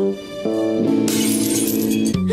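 A held music chord, and about a second in a glass object shattering on a tiled floor, the crash of breaking glass running on over the chord.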